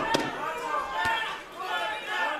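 Men's voices from the boxing broadcast and arena, with a couple of sharp knocks near the start and another about a second in.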